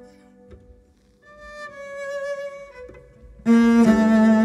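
Cello playing slow, held bowed notes: soft at first, then higher notes, then a loud low note comes in suddenly about three and a half seconds in.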